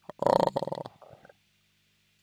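A man's drawn-out hesitation sound "a-a", under a second long, trailing off into a short softer murmur, over a faint low steady hum.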